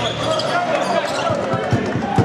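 Live game sound in a sports hall: a basketball bouncing on the court, with voices from players and spectators. A few short thumps come in the second half.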